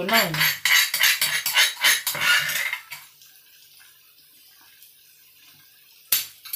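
Metal kitchen utensil clattering against cookware: a quick run of loud clinks and scrapes for about three seconds, then only a few faint taps.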